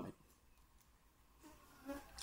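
Near silence between a man's spoken phrases: faint room tone, with the last trace of a word at the very start and a faint short sound just before he speaks again.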